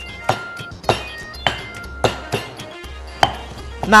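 Stone pestle pounding roasted chilies, garlic and shallots in a granite mortar, about six strokes at uneven intervals, working them into a fine chili paste. Background music plays underneath.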